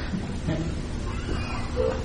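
A short pause in a man's lecture, leaving the steady background hiss of the recording, with a faint brief sound near the end just before speech resumes.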